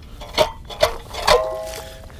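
Metal shaft and blue blade of an old hand ice auger knocking against the ice three times, about half a second apart, as the auger comes out of a freshly drilled hole; the last knock leaves a short metallic ring.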